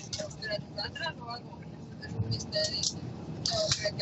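Cabin noise inside a moving coach bus: a steady low rumble from the engine and road, with faint voices in the background.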